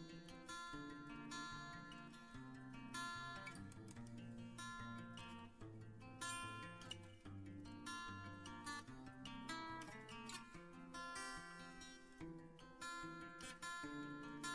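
Soft background music of plucked acoustic guitar, a steady run of picked notes.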